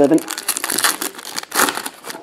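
Foil wrappers of trading-card packs crinkling as they are handled and opened by hand, in irregular bursts, loudest about a second in and again near the end.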